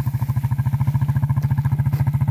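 Four-wheeler (ATV) engine running at low speed under load as it tows a round hay bale on a strap, with a steady, rapid putter that grows slightly louder.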